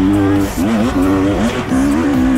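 Enduro dirt bike engine revving under load on a steep hill climb, its pitch rising and dipping repeatedly with the throttle.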